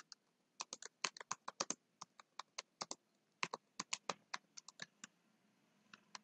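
Computer keyboard being typed on: a quick, irregular run of keystrokes as a line of text is entered, stopping about a second before the end.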